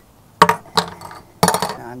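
Small plastic brewing parts, such as an airlock, clinking and knocking against the inside of an empty plastic fermenting bucket. There are three sharp knocks, the first about half a second in and the last and busiest near the end.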